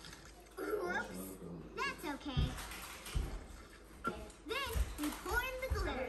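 High-pitched, child-like wordless voice sounds, a few rising and falling squeals or hums, over water running faintly, with a few soft low thumps.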